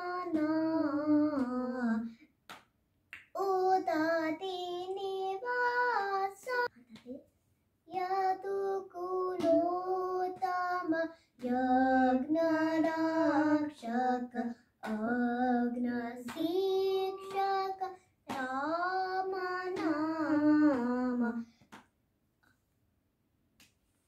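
A young girl singing a song unaccompanied, in six short phrases with brief pauses between them, often dropping in pitch at the end of a phrase; the singing stops shortly before the end.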